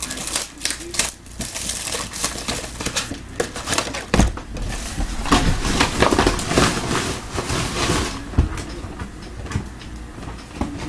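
Plastic wrapping crinkling and crackling as sealed trading-card boxes are handled, with many small clicks and a dull thump about four seconds in and another near the end.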